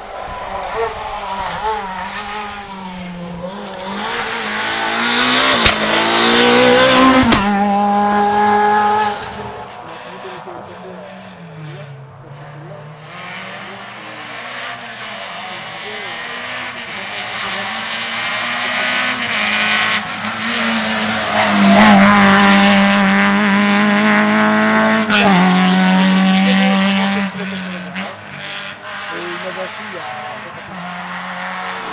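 Rally cars driven flat out on a closed road stage, their engines revving hard and dropping in pitch at each gear change. The loudest moments come about five to nine seconds in and again about twenty-two to twenty-seven seconds in, as the cars pass close.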